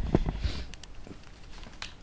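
Handling noise as an airsoft M4 rifle fitted with a scope, bipod and foregrip is picked up and carried off: a low rumble at first, then a few light clicks and knocks of the gun's fittings.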